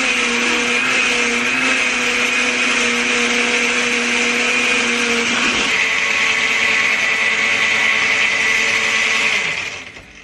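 Countertop blender running steadily, blending a smoothie of frozen berries and ice in almond milk. Its sound changes about halfway through, and it stops near the end.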